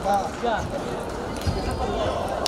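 Table tennis balls clicking sharply and irregularly off tables and paddles, over steady background chatter of many voices.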